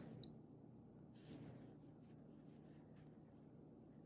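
Near silence with a few faint, brief scratches of a metal crochet hook drawing cotton yarn through stitches.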